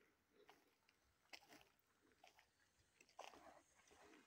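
Faint footsteps crunching on a dry dirt trail strewn with pine needles and dead bracken, a few irregular steps.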